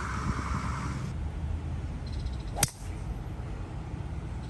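A golf club striking a ball off the tee: a single sharp click about two and a half seconds in, over a low steady outdoor rumble.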